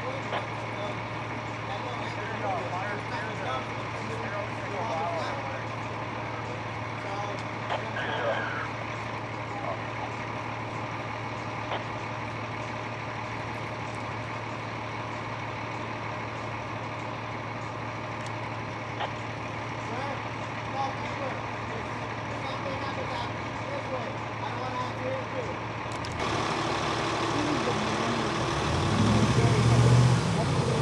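A large diesel truck engine idling steadily, with faint voices far off. Near the end the sound changes, and a truck engine comes up louder.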